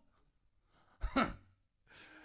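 A person's single short, breathy laugh, a chuckle with a falling pitch about a second in, after a moment of quiet.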